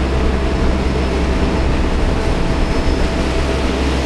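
Fishing boat's engine running steadily while under way, heard as a continuous rumble with wind noise on the microphone.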